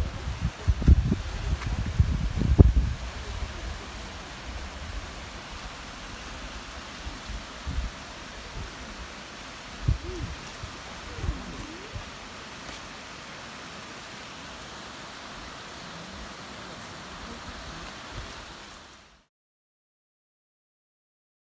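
Steady rush of a shallow mountain stream spilling over a small stepped stone weir. Low rumbles and knocks break in during the first three seconds, and the sound cuts off about a second before the end.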